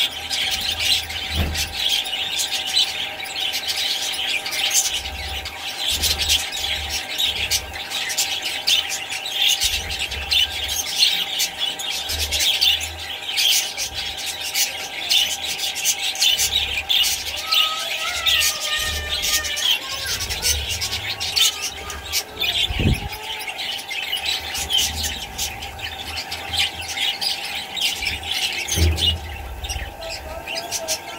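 A flock of budgerigars chattering without pause: many short, overlapping chirps and squawks at once.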